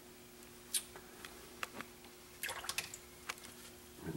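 A paintbrush being worked in a small cup of water: a string of light taps, clicks and small splashes, with a quick cluster of them about two and a half seconds in. A faint steady hum runs underneath.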